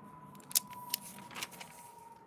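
Glossy magazine pages rustling and crackling as they are handled and turned, in a few short sharp bursts about half a second to a second and a half in, over a faint steady high tone.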